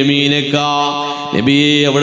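A man's voice in melodic, chant-like religious recitation, holding long sustained notes with a brief break about a second and a half in.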